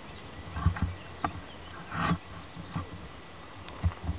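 Irregular low thumps and rumbles on a handheld camera's own microphone, with a few light clicks and a louder burst about two seconds in.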